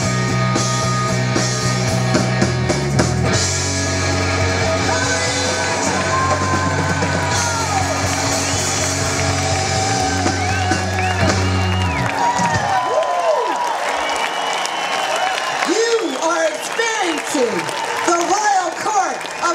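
Live blues-rock band of electric guitar, bass, keyboard and drums playing the final bars of a song, with the bass and full band stopping about twelve seconds in. After that, voices whoop with sweeping rises and falls in pitch over the last ringing notes.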